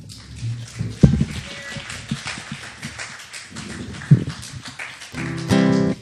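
Acoustic guitar picked lightly and unevenly, with two sharp knocks about one and four seconds in, and a louder held note near the end.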